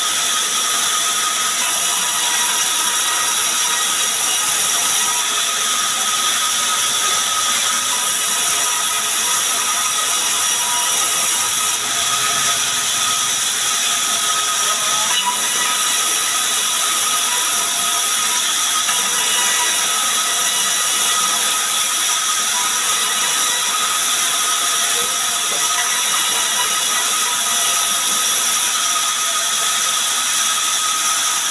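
Sawmill band saw running with a steady high-pitched tone, its blade ripping a log lengthwise into boards.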